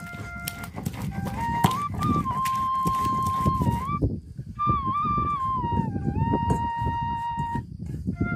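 Background flute melody, over a dense low rumble; the melody breaks off briefly about four seconds in and again near the end.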